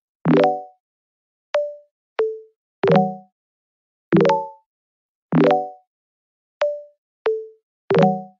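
Background music of short plucked chords about every one and a quarter seconds, with single notes in between, each note dying away quickly into silence.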